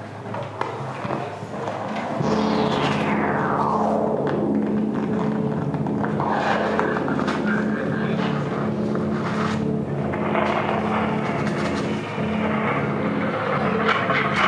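Experimental noise played live on an amplified prepared wooden box with upright metal rods and springs: a dense drone with steady low tones swells up about two seconds in, crossed by a long whistle sliding downward, with a brighter, harsher layer coming in around ten seconds.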